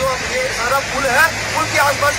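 A man's voice speaking through a handheld microphone and loudspeaker: a police announcement warning people to leave the area and go home. A low steady hum runs under the voice.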